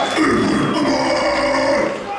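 Death metal vocalist's harsh growl through a live PA, one long held growl that breaks off near the end.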